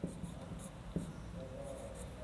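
Marker pen writing on a whiteboard: faint strokes of the felt tip against the board, with a light knock at the start and another about a second in.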